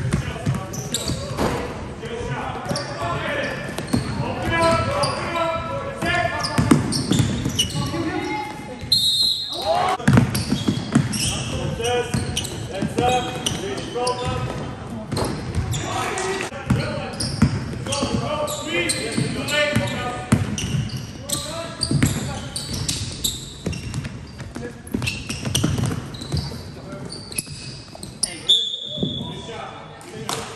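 Indoor basketball game in a large sports hall: players' voices carry across the court over the ball bouncing, with two short, high referee whistle blasts, about nine seconds in and just before the end.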